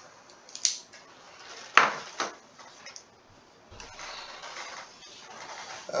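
Three sharp clicks or knocks, about half a second, almost two and just over two seconds in, then a soft steady hiss for the last two seconds or so.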